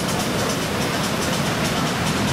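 Heavy surf from a storm-roughened sea breaking on a sandy beach: a steady, loud rush of waves.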